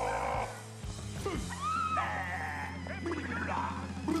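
Film soundtrack music with a steady low note underneath, and a few short high-pitched cries over it, the most prominent a little after a second in.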